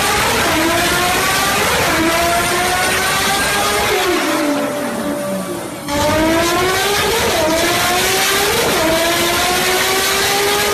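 Toyota Supra Mk4 engine accelerating hard through the gears. The pitch climbs in each gear and drops briefly at each shift. About four seconds in it falls away for nearly two seconds, then climbs again.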